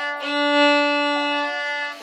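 Violins bowing one long held note that stops just before the end.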